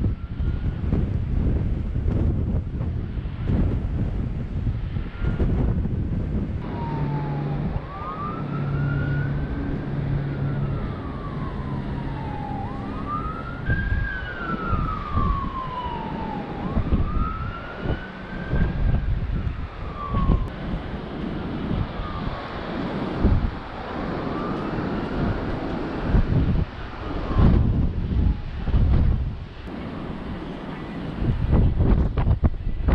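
Wind buffeting the microphone, with a fainter emergency-vehicle siren wailing in about five slow rising-and-falling sweeps from about six seconds in until near the end.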